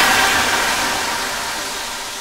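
Electronic dance music transition: a hissing noise sweep effect that fades steadily away, with faint held tones underneath.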